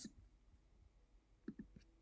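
Near silence, with a few faint clicks about one and a half seconds in.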